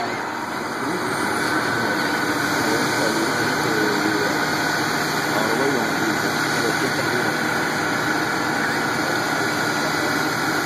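Engines of heavy machinery running steadily, with a faint steady whine that comes in about a second and a half in. Indistinct voices are mixed in.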